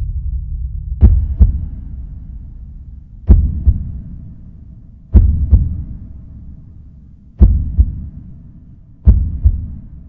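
Heartbeat sound effect in a film score: a double thump, lub-dub, about every two seconds, five times over a low drone that fades away in the first few seconds.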